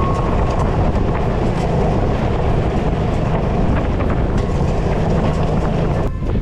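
Motorcycle riding on a loose gravel road: a steady rumble of tyres on gravel mixed with strong wind buffeting the microphone, with scattered small clicks of stones.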